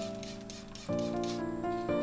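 Hand spray bottle misting water in quick squirts, about four a second, stopping about one and a half seconds in. Soft background music with sustained piano-like notes plays throughout.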